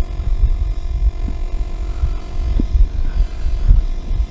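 Strong wind buffeting the microphone: an irregular, gusting low rumble.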